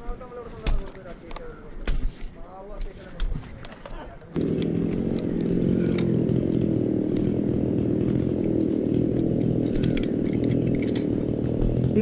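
Sharp knocks of steel climbing spikes striking and pulling out of tree bark during a descent. About four seconds in, a small engine suddenly starts up loud and keeps running at a steady speed.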